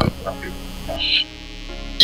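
A steady low hum of several held pitches fills a pause in the speech. A brief, faint, higher sound comes about a second in.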